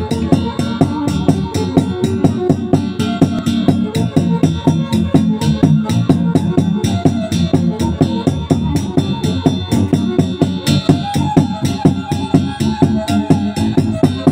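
Live violin playing a tune over an electronic arranger keyboard's accompaniment, which drives a quick, steady beat.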